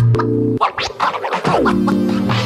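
Background electronic music with quick scratch-like strokes and a falling pitch glide about halfway in.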